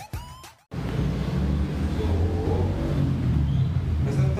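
A short tail of intro music cuts off in the first second, followed by a steady low rumble of background noise with no clear pattern.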